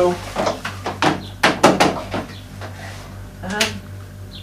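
Knocks and clicks of cables, clamps and tools being handled on a wooden workbench, with a quick run of sharp knocks about a second and a half in and another knock near the end.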